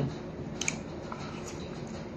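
A metal spoon moving in a ceramic bowl of noodle soup, giving a few faint clicks over a steady low room hum.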